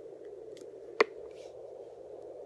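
Handheld fetal Doppler's speaker giving a steady low static hiss while its probe searches the lower belly, with no heartbeat picked up yet. A single sharp click about a second in.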